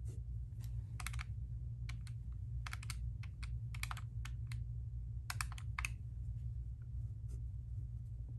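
Plastic keys of a handheld calculator pressed in quick runs: several clusters of light clicks over the first six seconds, over a steady low hum.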